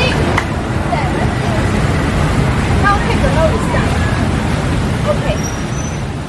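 Outdoor background noise: a steady low rumble like road traffic, with scattered distant voices chattering.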